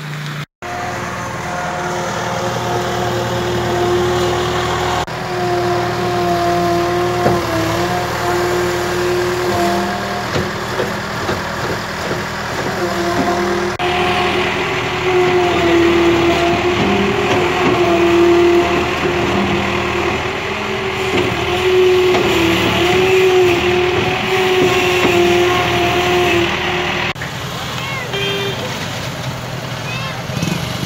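Engine of a JCB earthmover running steadily, its pitch wavering up and down slightly as it works. The sound changes abruptly a few times.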